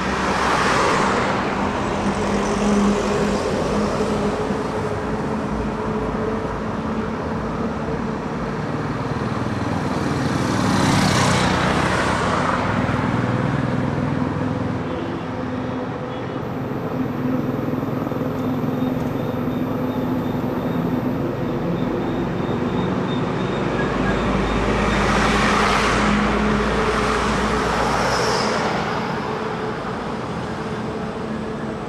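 Road traffic: a steady rumble, with vehicles passing three times, each swelling up and fading away over a couple of seconds.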